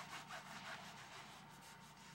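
Faint, repeated scraping or rubbing strokes, several a second, over a low background hum.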